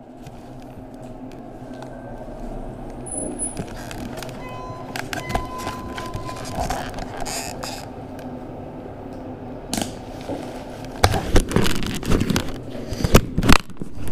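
Steady hum inside a moving lift car, with a thin tone about five seconds in. From about eleven seconds, a run of loud knocks and rustles.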